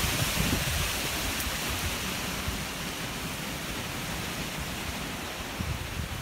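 Strong wind gusting through a conifer forest: a steady rushing of wind in the trees, with low, uneven rumbling where the wind buffets the microphone, easing slightly toward the end.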